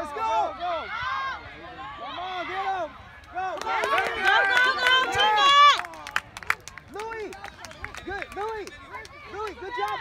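Many high-pitched voices shouting and calling unintelligibly across a youth soccer field, swelling into loud yelling from about three and a half seconds in and dropping back just before six seconds.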